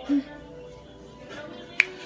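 A single sharp click, like a finger snap, near the end, over faint steady background music.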